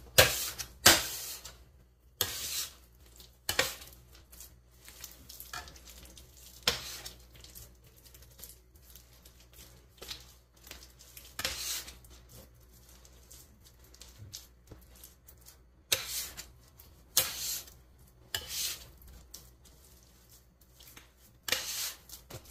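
Soft, slightly sticky bread dough being kneaded by hand on a work surface and gathered with a dough scraper: irregular wet slaps and squishes with the scraper blade scraping across the table, a dozen or so short sounds spread unevenly through.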